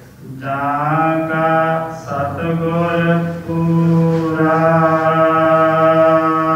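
A man's voice chanting a Sikh religious recitation in long held notes. It slides up into its first note about half a second in, pauses briefly twice, then holds a steady tone through the rest.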